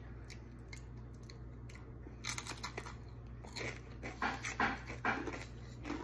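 Crisp crunching of raw sweet pepper being bitten and chewed, a run of irregular crunches starting about two seconds in.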